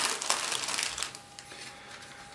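Plastic kit bag crinkling as a plastic model sprue is handled and drawn out of it, with a few light clicks. The crinkling dies down after about a second.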